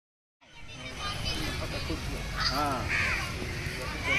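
Silent for about half a second, then outdoor background sound with people's voices talking over a low, steady rumble.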